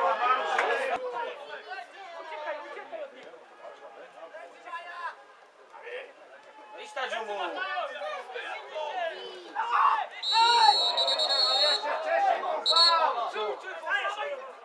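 Spectators talking and calling out close by. About ten seconds in, a referee's whistle blows one long, steady blast, then a short one a second later, stopping play.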